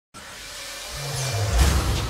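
Intro music sting: a rising swell that builds, with low bass notes coming in, to a deep bass hit about one and a half seconds in.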